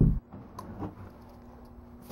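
Faint, irregular light taps and scratches of a paintbrush dry-brushing grey paint onto the raised parts of a textured joint-compound faux stone surface.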